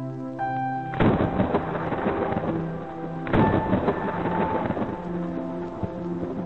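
Soft ambient music with held chords, over which a thunder sound comes in twice: a crash about a second in and another about three seconds in, each rolling away over a couple of seconds.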